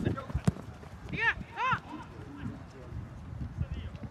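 Soccer players' feet thudding irregularly on artificial turf during play, with one sharp kick of the ball about half a second in. Two short shouts from players follow a little after a second.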